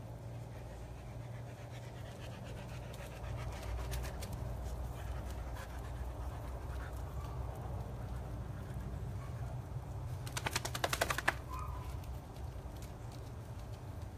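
A dog panting in quick, rapid breaths, loudest in a burst of about a second some ten seconds in, over a steady low hum.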